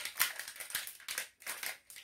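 Crinkling and clicking of a plastic shampoo bottle and its packaging being worked by hand, a quick irregular series of crackles, as a hard-to-open cap or seal is pried at.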